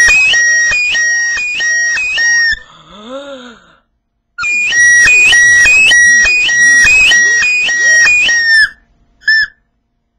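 A small handheld toy whistle blown in a shrill, rapidly warbling pattern, its pitch flicking between two notes about twice a second as fingers open and close over it. It plays in two long runs with a short break between them, then one last short chirp near the end.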